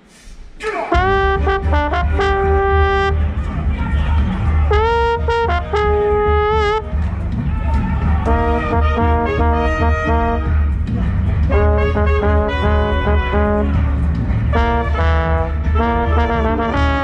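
A theatre pit orchestra's brass section, trombone among it, plays short punchy phrases with some swelling glides over a steady low bass. The band comes in suddenly about a second in and plays loudly throughout.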